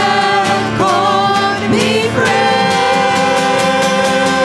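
Church worship band performing a contemporary praise song: several voices singing over piano, acoustic guitar and drums, sliding into a long held note about halfway through.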